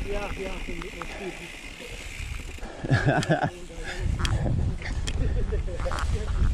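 Mountain bike rolling down rocky singletrack: a low rumble of tyres and wind on the helmet-camera mic, with a few sharp knocks and rattles from the bike over rocks, the rumble growing steadier over the last two seconds.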